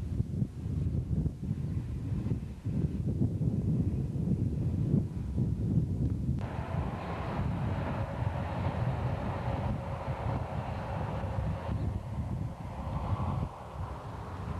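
Wind buffeting the camcorder microphone in gusts. About halfway through, a steady mechanical hum joins in, then cuts off abruptly near the end.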